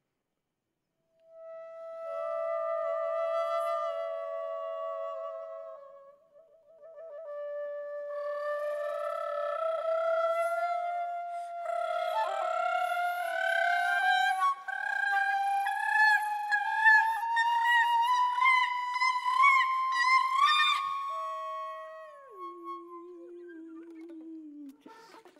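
Improvised concert flute and a woman's voice held on long sustained tones with a slight waver. A slow pitch climb follows, lasting more than ten seconds and growing louder and fuller, then the sound drops to a lower held note near the end.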